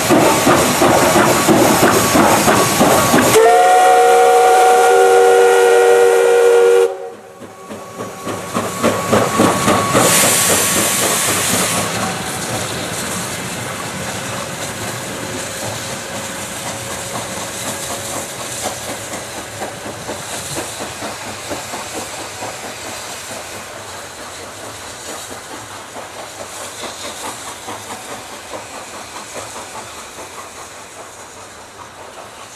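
P36 steam locomotive working hard past at speed, its exhaust beats and steam hiss loud. About three seconds in, its chime whistle sounds a chord of several notes for about three and a half seconds. It stops suddenly, and the beats and a loud hiss of steam return and fade slowly as the train pulls away.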